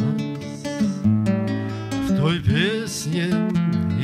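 Nylon-string classical guitar played as accompaniment to a song, an instrumental passage between sung lines.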